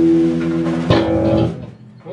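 A live band's electric guitar and bass holding the closing chord, with a sharp last hit just under a second in, after which the sound cuts off and dies away.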